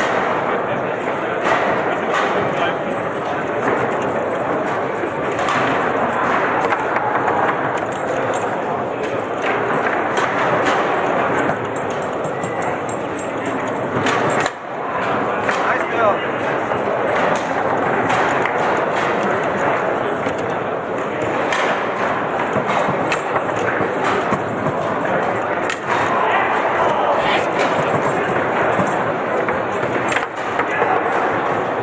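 Foosball being played on a Lehmacher table: the ball and rods clacking and knocking again and again, over a steady background of many voices in a large hall.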